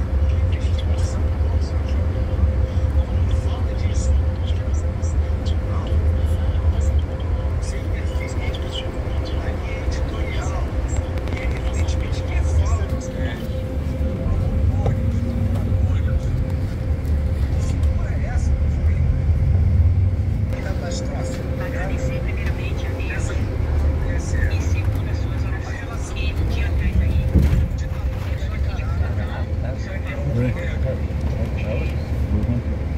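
Steady low road and engine rumble inside a moving vehicle's cabin, with a faint steady hum over it and scattered small clicks and rattles.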